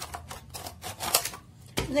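Scissors cutting a thin plastic bottle: a quick series of short crisp snips and crackles of the plastic.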